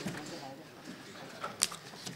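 A lull in a quiet room, with faint paper handling and one brief sharp click about one and a half seconds in.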